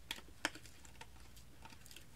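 Light clicks and taps from an eyeshadow palette being handled and opened, with two sharper clicks in the first half second and fainter ones after.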